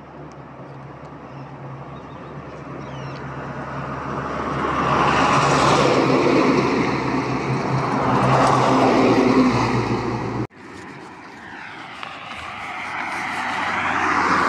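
A heavy truck's engine and tyres as it drives past on the road, getting louder to a peak several seconds in. The sound breaks off abruptly about ten and a half seconds in, then a vehicle is heard drawing near again.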